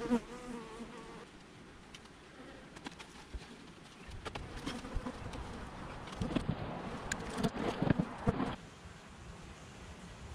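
Honeybees buzzing around an opened hive, a clear buzzing tone close by in the first second. Over the middle and latter part, wooden hive boxes knock and scrape as they are lifted and set in place, loudest a second or two before the end.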